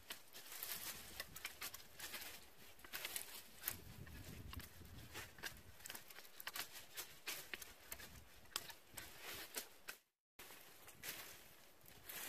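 Dry cut branches and twigs of a Japanese apricot tree crackling and rustling as they are handled and pulled through brush, with footsteps in dry grass: faint, irregular snaps and clicks. The sound cuts out completely for a moment about ten seconds in.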